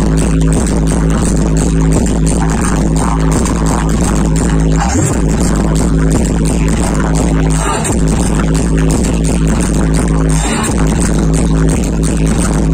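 Loud electronic dance music with a heavy, steady bass beat, played through a DJ sound system. The bass drops out briefly every few seconds, each time with a short rising sweep.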